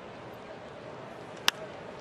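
Steady ballpark crowd noise, cut by a single sharp crack of a wooden bat hitting a pitched baseball about one and a half seconds in.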